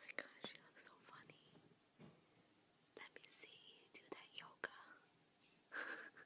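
Very faint whispering: a few short whispered words, with a few soft clicks between them.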